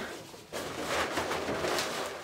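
Inflated latex balloons rubbing and rustling against each other as hands press them into a cluster on a metal hoop frame, starting about half a second in.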